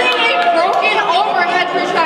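Speech: a young woman speaking at a microphone, talking without a break.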